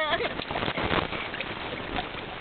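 Shallow water splashing and sloshing as a mass of eels thrash over each other at the stream's edge: a continuous, irregular watery crackle.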